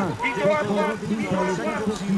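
A man speaking French continuously: race commentary giving the standings.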